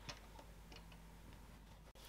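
Near silence with a few faint light ticks in the first second: plastic side release buckles being set down on a tabletop.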